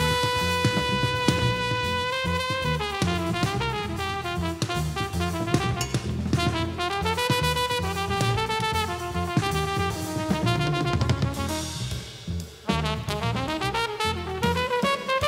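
Live jazz combo playing: trumpet and tenor saxophone over a double bass line and drum kit. A horn holds one long note at the start, and the band drops out briefly near the end before coming back in.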